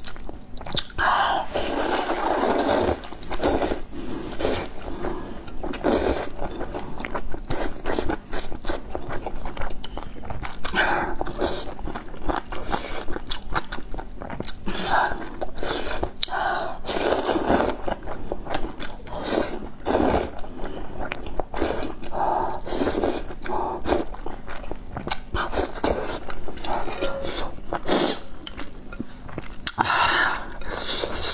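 Noodles being slurped from a bowl of spicy soup, with chewing in between: bursts of slurping every few seconds.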